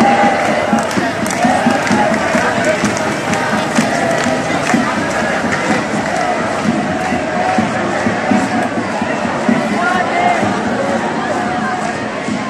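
Marching protest crowd: many voices at once, talking and shouting, with chanting from the marchers.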